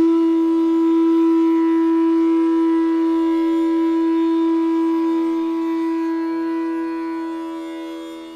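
Bansuri (Indian bamboo flute) holding one long, steady note in a raga, which fades away over the last two seconds. A faint lower drone sounds beneath it.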